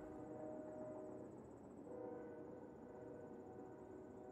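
Faint outdoor background: a thin, high, steady trill like an insect's, over a faint steady hum.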